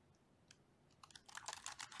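Computer keyboard typing: a single keystroke about half a second in, then a quick run of keystrokes through the second half.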